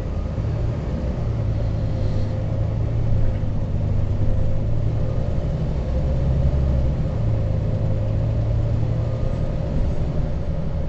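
Moving bus heard from inside the passenger saloon: a steady low engine and road rumble with a whine that wavers slightly in pitch as it drives along.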